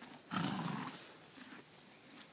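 A pony snorting: one short, breathy blow through the nostrils about a third of a second in, lasting about half a second.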